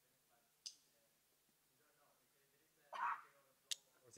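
Near silence broken by a faint mouth click, a short intake of breath about three seconds in, and another click just before speaking, picked up by a lectern microphone.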